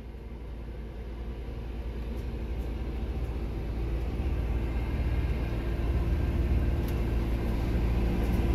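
Cab of a Newmar Dutch Star diesel-pusher motorhome rolling slowly: a steady low engine and road rumble that grows gradually louder.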